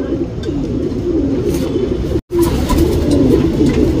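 Domestic pigeons cooing continuously, with a momentary dropout just after halfway.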